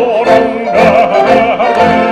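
A singing voice with wide vibrato, held and wavering notes, over wind band accompaniment.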